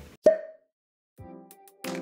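A short pop sound effect with a brief ringing tone about a quarter second in, then after a moment of silence a light musical jingle that starts about a second in and grows louder near the end: an edited transition between segments.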